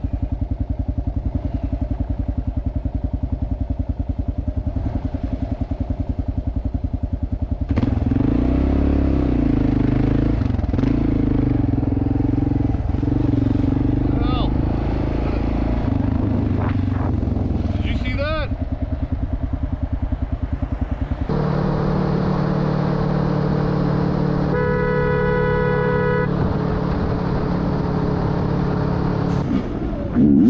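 Motorcycle engine running with an even pulsing beat, then louder and busier from about eight seconds in as the bike rides on through traffic. About twenty-five seconds in, a horn sounds for over a second over the engine.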